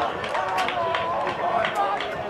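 Shouting and calling voices of football players and onlookers, in short broken calls, with several short sharp knocks among them.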